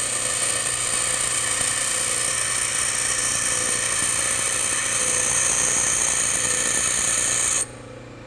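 Bench grinder wheel grinding a high-speed steel lathe tool bit: a steady, high hiss of steel on the abrasive wheel as top relief is ground onto the bit. Near the end the grinding cuts off suddenly as the bit comes off the wheel, leaving the grinder running more quietly.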